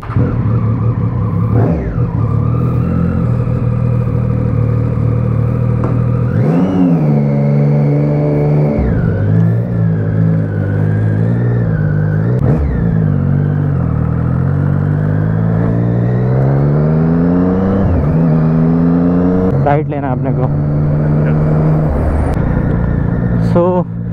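Motorcycle engine idling steadily for about six seconds, then pulling away: its pitch climbs and drops back with each gear change as the bike picks up speed, settling into a steady cruise near the end.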